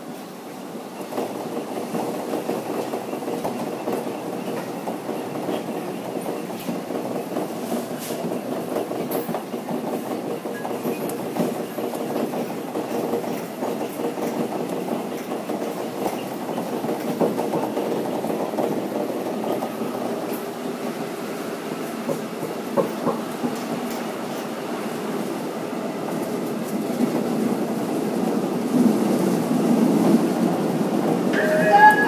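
A Seoul Metro 4000-series subway train running through a tunnel, heard from inside the car. Wheels rumble steadily on the rails with scattered clicks over rail joints, and the noise grows louder toward the end.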